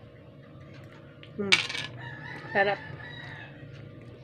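A woman's short 'hmm' about a second and a half in, while eating soursop, then a faint, long, high held call in the background, with another brief vocal sound in between.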